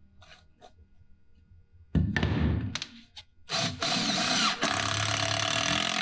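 18-volt cordless driver driving a 1-5/8 inch screw through a 3/4 inch plywood cleat into a 2x4 platform leg: a short burst about two seconds in, then a longer run of the motor from about three and a half seconds on.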